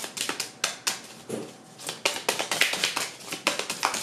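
A deck of oracle cards shuffled by hand: a fast run of short card-on-card clicks and flicks, densest in the second half.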